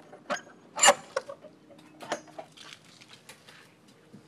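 A wooden gate's metal slide-bolt latch being drawn and the gate pulled open: a quick run of sharp clicks and knocks, the loudest just under a second in, followed by lighter scattered clatters.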